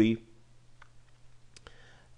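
A man's spoken word ends just at the start, then a quiet pause with a faint steady low hum and a few faint, sharp clicks: one a little under a second in and two close together near the end.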